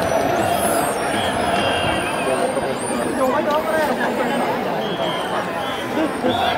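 Large baseball stadium crowd: a dense babble of many voices talking and calling at once, with brief high whistling tones rising above it here and there.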